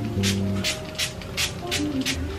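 A spray bottle squirting mist into hair in quick repeated pumps, short hissing spurts about three a second, over background music.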